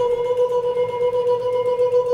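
A man holds one steady, unwavering mid-pitched note through pursed lips.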